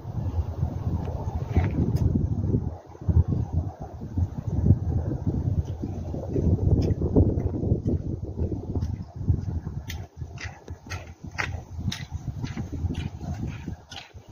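Wind buffeting the microphone as a loud, uneven low rumble. From about nine seconds in, it is joined by a quick run of short clicks from footsteps on the dirt trail.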